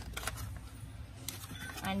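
A few scattered light crinkles and crackles as a foil pouch of print clay is picked up and handled.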